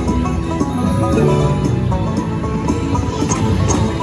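Slot machine bonus music in a banjo-led bluegrass style, playing loudly and continuously while the reels spin in the Eureka Reel Blast free-spins bonus.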